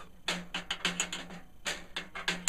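Snare drum strainer being tightened by hand: a run of small, irregular clicks and rattles from the mechanism and snare wires.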